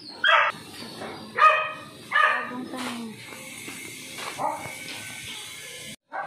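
A dog barking, three loud short barks in the first two and a half seconds, then a fainter one later.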